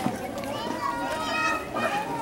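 Chatter of people and children's voices, with one high voice held for about a second.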